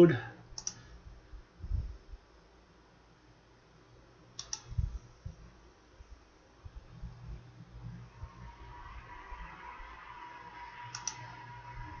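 A few computer mouse clicks, seconds apart, with a couple of low thumps early on. In the second half a faint hiss and a steady hum come up.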